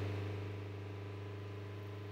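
Renault four-cylinder turbodiesel engine held steady at about 3,000 rpm, giving an even, unchanging hum.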